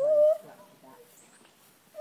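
A gibbon gives a short, high call: one clear note, rising slightly, lasting under half a second right at the start. After it the sound is faint.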